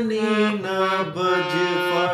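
Harmonium playing a melody: reedy, sustained notes, each held about half a second before stepping to the next.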